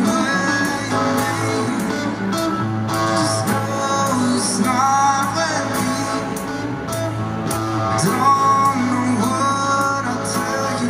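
A man singing live into a microphone over his own strummed acoustic guitar, the strums in a steady rhythm beneath the melody.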